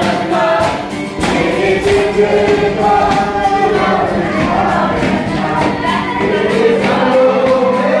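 A group of voices singing together in unison, with an acoustic guitar strummed along.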